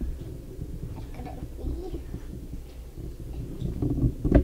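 A child's brief, soft murmur about a second and a half in, over a steady low rumble of room and handling noise.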